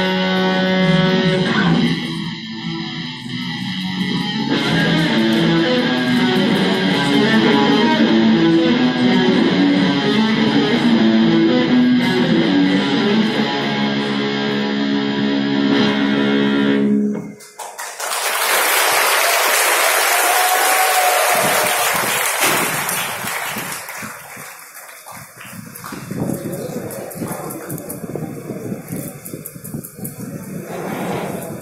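Electric guitars played through small amps, a lead melody over chords, stopping abruptly a little past halfway. Then the audience cheers and applauds loudly, dying down to lighter crowd noise near the end.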